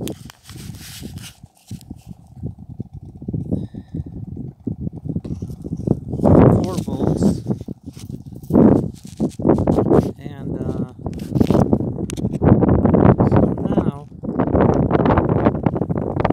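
A man's low, indistinct talking, mixed with handling clicks and knocks. A faint steady hum runs under the first half and fades out about ten seconds in.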